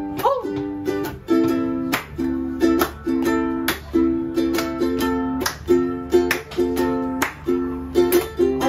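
Ukulele strummed in a steady, even rhythm of ringing chords, with hand claps keeping time.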